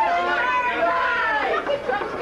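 Several people talking over one another in a club between songs.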